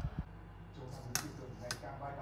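A running oven hums steadily and low, with two sharp ticks about a second in and half a second later. Faint voices sound in the background.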